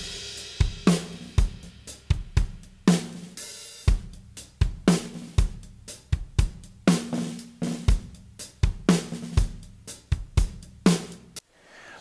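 Recorded studio drum kit played back on its own, with the whole kit soloed: a steady groove of kick drum, hi-hat and cymbals, and snare hits with a short ringing tone about every two seconds. It has a punchy sound, and the playing stops shortly before the end.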